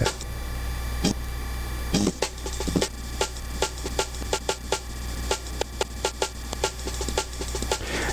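A sampled drum loop played back lo-fi from an ISD1760 sample-player chip, its end point cut short by the end knob so the beat stutters and restarts. A steady low hum of noise from the synth rig runs underneath.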